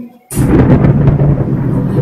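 Thunder sound effect in the show's backing track, played through the stage speakers. It starts suddenly after a brief silence, about a third of a second in, and goes on as a sustained low rumble.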